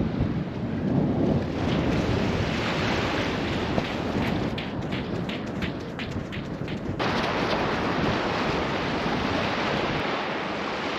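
Wind buffeting the microphone, with a steady rush of sea surf. In the middle comes a run of soft footfalls, about three a second, from bare feet running on sand. About seven seconds in the sound shifts suddenly to an even rush of surf and wind.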